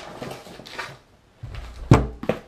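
Cardboard shipping box and its packing being handled, with light rustles and knocks, then a low rumble and one sharp thump near the end.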